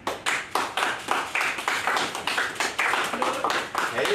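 A small group of people applauding with quick, irregular hand claps that overlap one another, starting suddenly.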